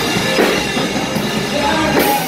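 A live rock band playing: electric guitars and drum kit, with a loud hit about half a second in.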